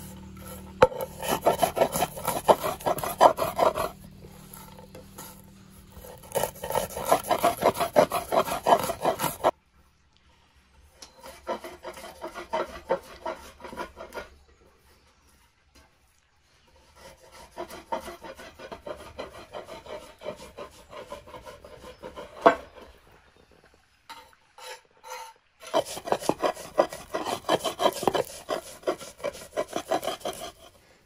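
A round grinding stone rubbed back and forth over walnuts in a wooden namak-yar bowl, crushing them: a gritty, rasping scrape in stretches. It is louder at the start and near the end and fainter in between.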